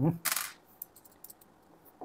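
A brief metallic clink and rattle about a quarter second in, as small metal parts and a screwdriver are handled on a tabletop during a hard drive teardown. It is followed by a few faint ticks.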